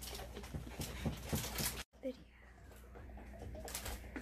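Heavy cream sloshing in a glass jar shaken hard by hand, a fast run of sloshes and knocks. It cuts off abruptly about two seconds in, stays quieter for a while, and the shaking sounds come back near the end.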